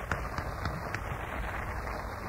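Audience applauding: a dense, steady patter of hand claps with scattered sharper claps.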